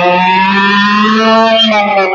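A man's voice imitating a motorcycle engine being started and revved: one long held engine-like note that rises slightly in pitch and dips near the end.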